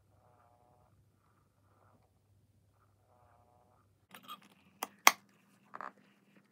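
Battery-powered breathing mechanism inside a Perfect Petzzz ginger tabby toy cat, a faint motor whir with each breath, twice about three seconds apart, over a low hum. In the last two seconds, a few knocks and rustles of the plush toy being handled, one sharp knock the loudest.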